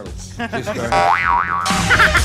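A comic studio sound effect, a tone that wobbles up and down in pitch, followed by loud, dense music starting suddenly near the end.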